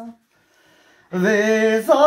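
A man singing a slow song without accompaniment, in long held notes. A held note ends just after the start, there is a breath pause of about a second, and then a new long phrase begins.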